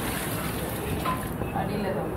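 Liquid poured from a steel pot into a large aluminium pot of biryani masala: a steady splashing pour.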